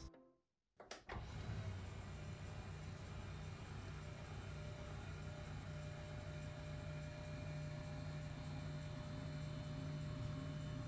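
Flexispot EF1 electric standing desk frame's lift motor running as the desk changes height: a click about a second in, then a quiet, steady, smooth rumble with a low hum and no clunking.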